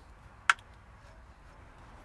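A single sharp click about half a second in, against a faint background.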